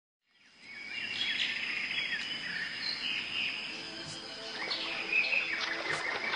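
Birds chirping over a steady insect trill, fading in at the start. Soft music with held tones comes in about two-thirds of the way through.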